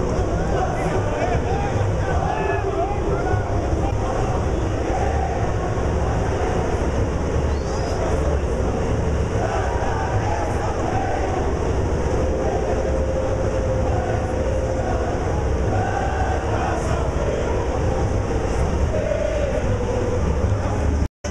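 Live samba school parade sound: the bateria's drums making a dense, continuous low rumble, with many voices singing the samba-enredo over it.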